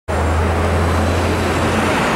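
Street traffic noise with a deep vehicle engine rumble.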